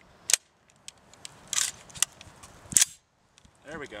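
Metallic clacks of an M4 carbine's action being worked by hand as it is readied to fire: three sharp clacks roughly a second and a quarter apart, with a few light ticks between.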